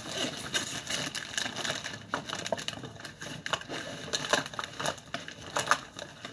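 Rummaging through a bag crammed with makeup products: irregular clicks, clatters and crinkles of cosmetic cases and packaging being shifted about.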